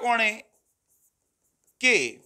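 A man's voice speaking briefly at the start and again near the end. In the quiet pause between comes faint scratching of a pen writing on the board.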